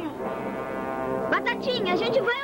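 Background film music holding a low, steady brass-like note, with voices breaking in over it in the second half.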